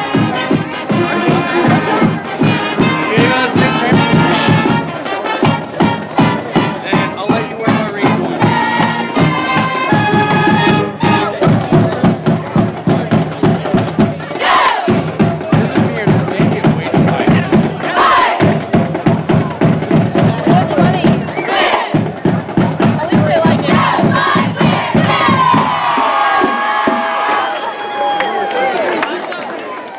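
A school band's drums and brass playing a steady beat while a crowd cheers, with loud shouts rising over it a few times.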